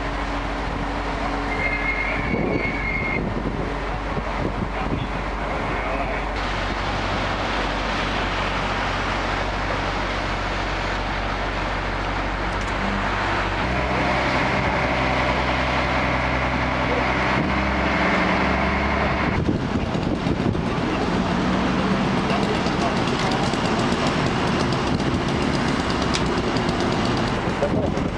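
Heavy diesel engine of a fire-brigade mobile crane truck running steadily under the crane work, with its low hum changing pitch about halfway through.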